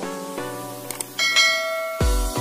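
Soft music with short pitched notes runs under a subscribe-button sound effect. Just before a second in there is a small click, and then a bright bell chime starts and rings on to the end.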